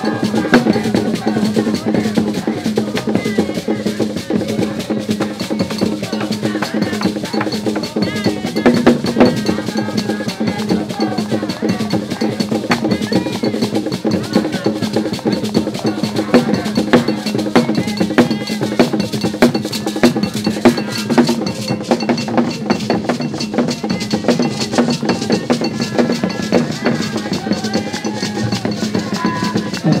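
Drumming in a steady, busy rhythm, with a group of voices singing over it.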